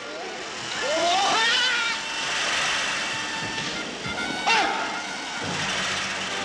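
Film soundtrack of motorised lawnmowers: music with several swooping, gliding tones over a steady whirring noise.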